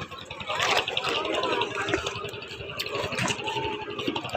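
Indistinct voices of people nearby over a running engine, with a fast, even ticking in the first half.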